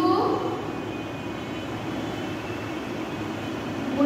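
A woman's voice briefly at the start, then a steady background rush with a faint high whine and no clear writing sounds.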